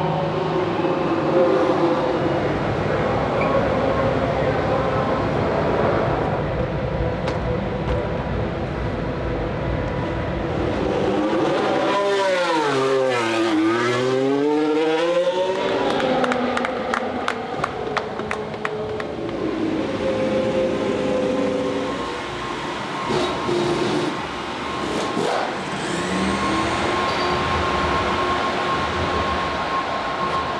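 Formula One car engines (turbocharged V6 hybrids) running, one falling in pitch as it slows and then climbing again as it accelerates about twelve to sixteen seconds in. Hand claps follow just after.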